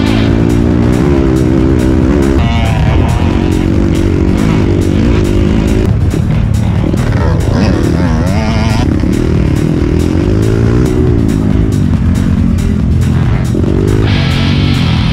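Dirt bike engine revving up and down as it climbs a rough trail, mixed with rock music that has a steady drum beat.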